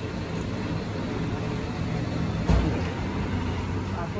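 A steady low mechanical hum, like an engine running nearby, with a single knock about two and a half seconds in.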